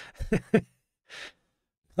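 A man's voice making a couple of short voiced sounds, then a breathy sigh about a second in.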